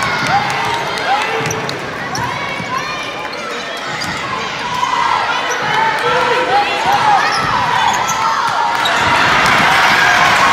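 Basketball game sounds on a hardwood gym floor: sneakers squeaking in short chirps again and again and a basketball bouncing, over indistinct voices of players and crowd. The crowd noise grows louder near the end.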